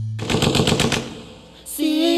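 A rapid burst of automatic gunfire, about eight shots in under a second, used as a sound effect in a recorded corrido right after a held music chord ends. A singing voice comes in near the end.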